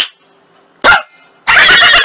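After a brief silence and a short falling squeal about a second in, a loud, rapidly pulsing cartoon laughing sound effect starts about halfway through.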